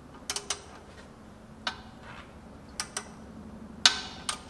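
Ratchet wrench on a car's oil drain plug, its pawl clicking in short, irregular runs as the handle is swung back and forth, with the loudest click near the end.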